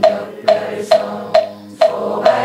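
A moktak (Korean wooden fish) struck with a mallet in a steady beat of about two strikes a second, five hollow knocks, over a congregation chanting in unison.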